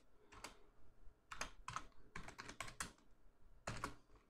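Computer keyboard typing: faint, irregular keystrokes in short runs with brief pauses between them.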